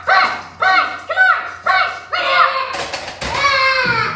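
Loud, high-pitched shouts of encouragement, about two a second, urging on a heavy bench-press single. Near three seconds in comes a sharp clank as the loaded barbell is racked, followed by one long falling yell.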